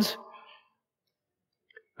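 The tail of a man's spoken word fading out, then silence broken only by one faint click shortly before the end.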